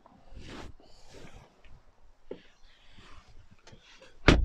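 Faint rustling and shuffling of a person climbing into a car's driver's seat, clothing brushing against the leather seat and trim, with a couple of light knocks.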